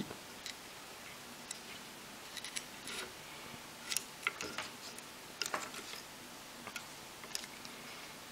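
Light, scattered clicks and taps of hands handling ESC wires against a carbon-fibre hexacopter frame and its distribution plate, about ten small ticks at irregular intervals.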